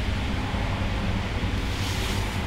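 Steady low background rumble with an even hiss over it, with no distinct event.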